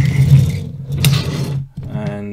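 Plastic wheels of a die-cast toy truck and its hopper trailers rolling on a cutting mat, a steady low rumble that stops suddenly near the end, with a sharp click of the metal parts a little after a second in.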